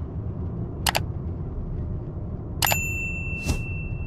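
Subscribe-button animation sound effects: a mouse-style click about a second in, then a bright bell ding a little past the middle that rings on steadily to the end. Under them runs a steady low road and engine rumble from inside the moving car.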